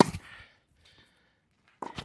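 A tennis ball struck on a forehand off a racket strung with Kirschbaum Flash 1.25 mm string: one sharp pop right at the start, then quiet.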